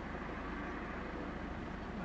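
Steady low hum of a car engine running, heard from inside the car.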